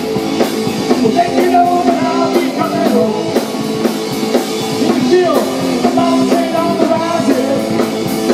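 Live rock band playing a song, a continuous passage between sung lines.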